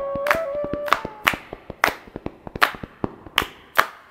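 Saxophone holding a long note that stops about a second in, while sharp percussion hits carry on about every half second to a second, fading out as the piece ends.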